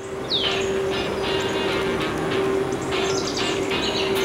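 Birds chirping, one sweeping call near the start then repeated short chirps, over a steady held note of background music.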